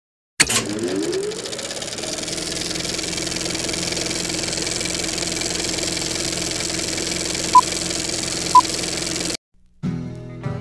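Electronic sound-effect drone: it starts suddenly with a rising sweep, then holds a steady hum under hiss. Two short high beeps come about a second apart near the end, and the drone then cuts off abruptly.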